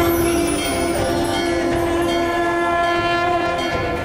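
Conch shell (shankh) blown in one long, steady, loud note during temple worship, fading out shortly before the end.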